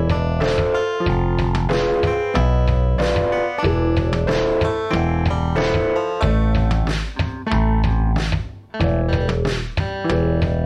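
Early demo recording of an experimental rock song playing: a repeating plucked guitar figure over low bass notes, in a steady rhythm.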